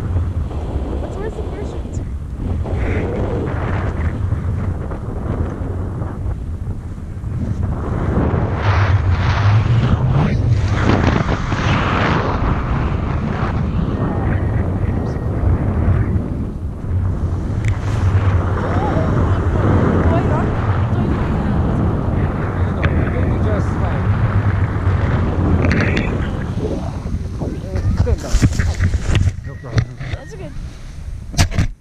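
Wind buffeting the camera microphone in paraglider flight: a steady low rumbling rush that swells and eases. Near the end come a few sharp knocks and rustles.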